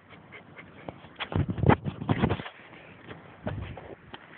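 An Old English Sheepdog making short vocal sounds, a cluster of them from just over a second in to about halfway, and one more shortly before the end.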